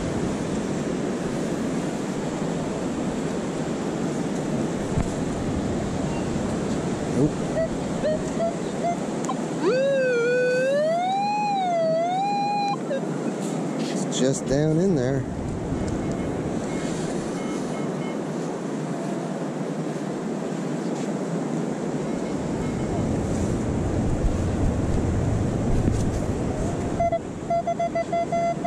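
Steady surf and wind noise on the beach. About ten seconds in there is a brief wavering pitched tone. Near the end a metal detector gives short beeps as it is swept over a dug target.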